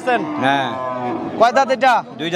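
A cow mooing: one long, loud call that slowly falls in pitch over about the first second, then shorter calls near the end.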